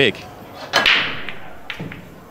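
English pool break-off: a sharp crack about three-quarters of a second in as the cue ball smashes into the rack of reds and yellows, then the balls clattering and fading over about a second, with a smaller knock near the end.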